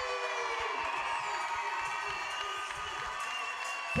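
Crowd cheering and whooping, many voices shouting at once.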